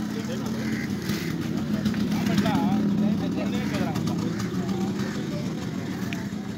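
An engine running steadily close by, growing louder for the first couple of seconds and then easing slightly, with people talking in the background.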